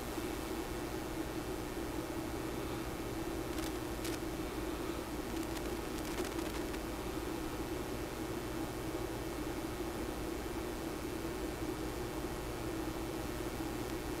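Steady low workshop hum, with a few faint small clicks about four and six seconds in as a micrometer is turned against a brass workpiece.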